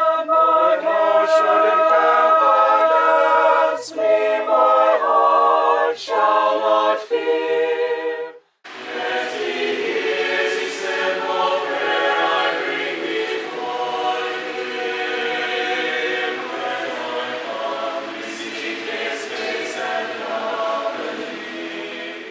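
Small mixed choir of men and women singing a hymn unaccompanied, in harmony. About eight seconds in, the singing breaks off for a moment and a different song picks up, sung in a church hall.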